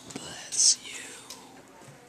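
A person whispering close to the listener's ear, most likely a whispered "bless you" after a sneeze, with a sharp hissing "s" about half a second in.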